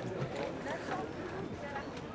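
Faint outdoor harbour ambience with distant, indistinct voices of people.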